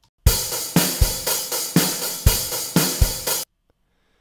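A software drum kit plays back a drum beat through the DAW for about three seconds: kick and snare hits under a steady hi-hat and cymbal wash, with a snare hit about once a second. Playback then cuts off suddenly.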